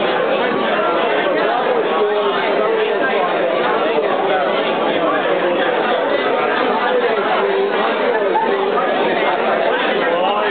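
Crowd chatter: many people talking at once in a large hall, a steady hubbub of overlapping voices with no single voice standing out.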